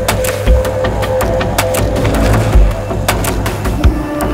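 Background music with a heavy beat.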